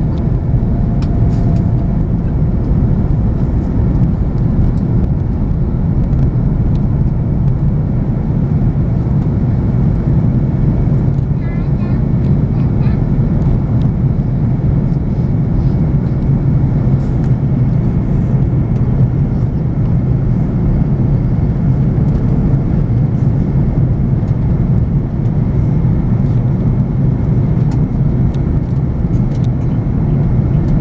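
Airliner cabin noise on the landing approach, heard from a window seat: a steady, even rumble of engines and airflow.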